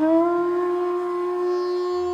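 Bansuri (bamboo flute) entering on a new note with a slight upward glide into pitch, then holding one long steady note. A low steady drone sounds underneath.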